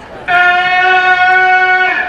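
One steady horn blast, held about a second and a half, starting about a third of a second in and stopping just before the end.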